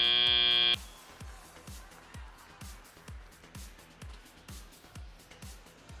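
End-of-match buzzer sounding a loud, steady, shrill tone that cuts off sharply under a second in. It is followed by faint arena music with a steady electronic drum beat.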